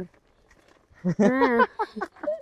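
After about a second of near quiet, a short wavering vocal sound from a woman, hummed or laughed with her mouth at the grapes she is eating, followed by a few broken voiced sounds.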